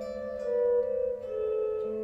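Electric guitar playing a slow melodic line over a held bass note, each note ringing on into the next; the upper note changes about three times.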